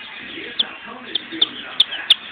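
Baby sex-link chicks peeping: about four short, high peeps spread across the two seconds.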